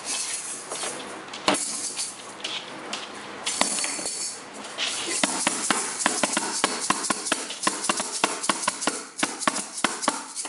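Small toy drum patted by hand: scattered knocks at first, then a fast, uneven run of taps through the second half. A shaker-like rattle is heard a few seconds in.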